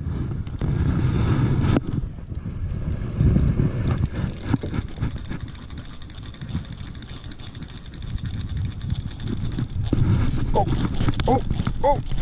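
Worn antique casting reel being cranked: its gears give a rapid, steady clicking through the middle of the stretch over a low rumble. The reel is old and stiff, hard to turn.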